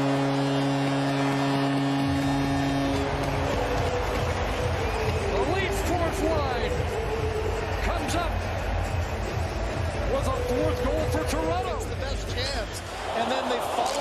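An arena goal horn blares as one steady chord for the first three seconds or so after a Toronto Maple Leafs goal. It gives way to loud crowd noise with shouting voices, which runs until the replay cuts.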